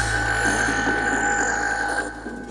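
Beatless break in a hardcore gabber track: held high synth tones over a deep bass drone and a dense grainy texture, with no kick drum.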